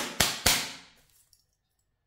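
A deck of tarot cards being shuffled by hand: three quick snaps of cards within the first half second, the last one trailing off and dying away by about a second in.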